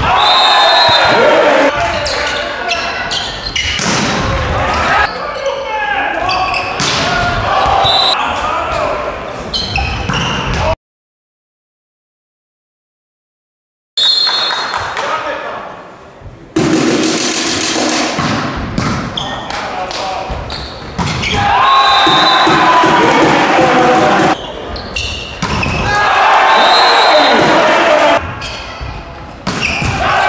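Volleyball rallies in a sports hall: players' voices shouting and calling over the thuds of the ball being hit, with short high tones several times. The sound drops out completely for about three seconds a third of the way through and changes abruptly at several edits between rallies.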